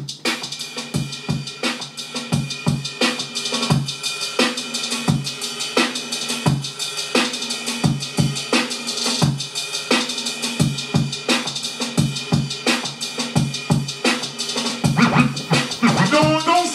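Music with a drum beat playing from a vinyl record on an Audio-Technica AT-LP1240 turntable, heard through a studio monitor speaker, starting abruptly at the very beginning.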